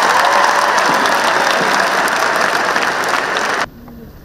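Large audience applauding, a dense steady clapping that cuts off abruptly near the end.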